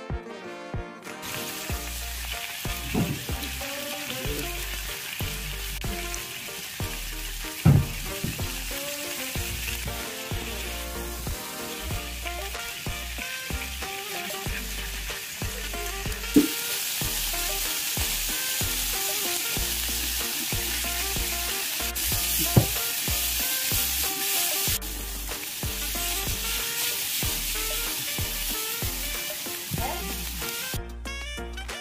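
Chicken liver skewers sizzling on a hot iron tawa. The sizzle grows louder about halfway through, and a few sharp knocks stand out over it.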